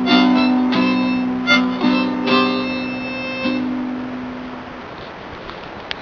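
Harmonica and guitar playing the closing phrases of a song, a few held harmonica notes over strummed chords, dying away about four to five seconds in and leaving a faint hiss. A single sharp click near the end.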